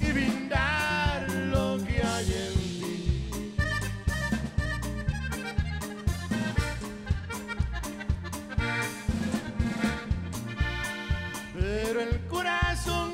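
Live norteño band playing an instrumental passage: button accordion carrying the melody over guitar, electric bass and a drum kit keeping a steady beat.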